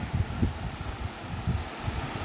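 Cloth saree rustling as it is unfolded and shaken out, over an uneven low rumble.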